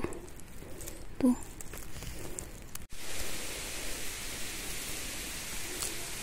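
Faint scattered rustles and clicks, then about halfway through a sudden change to a steady, even hiss of outdoor background noise.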